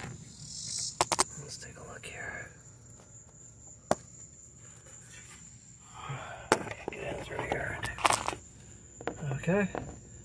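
Crickets trilling steadily in the background, with a few sharp clicks and some rustling from handling under the car.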